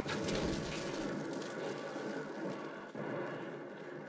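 Radio-drama sound effect of rustling in brush, as if men were dropping down into thick undergrowth. It is a steady, rough rustle with a brief dip about three seconds in.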